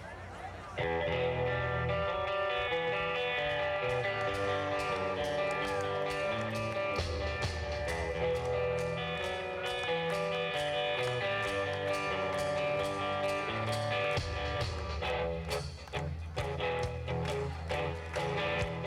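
Live rock band kicks into a song about a second in, with electric guitar over bass and drums. Sharper, clap-like beats stand out near the end.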